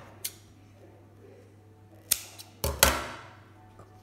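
Handling noise from sewing work on a wooden table: a light click about a quarter-second in, a sharp tap just after two seconds, then a louder pair of knocks near three seconds as the fabric pieces and a marking pen are handled.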